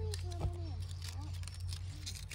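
Thin metal hand pick scratching and picking at crumbly rock and sand around a quartz crystal pocket, with light scattered clicks.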